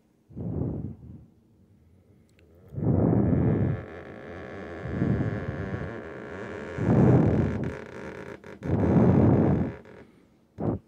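Fingertip dragging down a painted panel as a guide hand, making a rubbing noise in about five drawn-out pulses roughly two seconds apart. The noise is usually a sign of a clean surface.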